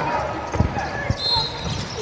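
A basketball bouncing on a court, three dribbles about half a second apart, over voices chattering in a gym.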